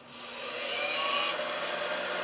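Blue hand-held hair dryer blowing, its air noise rising over the first second as it comes up to speed, then running steadily.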